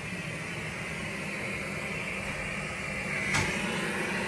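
Steady white-noise hiss, with a single sharp click a little over three seconds in.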